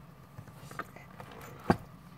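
A thick handmade junk journal being handled: faint paper and fabric rustles and small ticks, then a single sharp knock near the end as the book is turned over and set down on a cutting mat.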